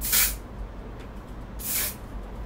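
Vanilla-scented aerosol spray can sprayed twice in short bursts of hiss, the first right at the start and the second near the end.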